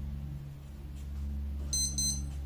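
Steady low electrical hum, with a short high-pitched electronic beep near the end.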